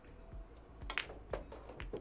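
A pool shot: the cue tip striking the cue ball and billiard balls clacking together as the object ball is pocketed, a few sharp clicks starting about a second in.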